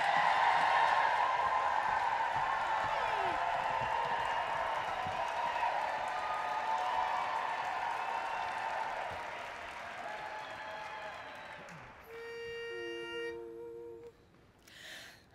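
Audience applause and cheering, slowly fading away. Near the end two steady sustained notes, a higher one held with a lower one joining briefly: the starting pitch being given for an a cappella barbershop quartet.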